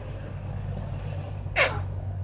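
A single sharp puff of breath blown into a long blowgun, firing a dart, about one and a half seconds in, over a steady low hum.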